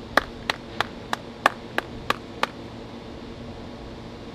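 A man clapping his hands in a steady rhythm, about three claps a second, eight claps in all, stopping about two and a half seconds in, over a steady low hum.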